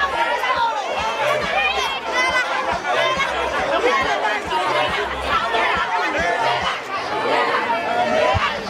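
A large crowd of people talking and shouting excitedly all at once, many voices overlapping without a break.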